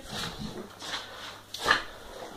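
Staffordshire bull terrier breathing in short, breathy huffs and sniffs, with a louder huff about 1.7 seconds in, as she waits for her treat.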